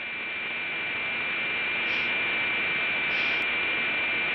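Radio-like static with a steady high whine running through it, swelling in and levelling off about two seconds in, with a few faint crackles and a click near the end; it is the noise opening of a post-hardcore EP's intro track.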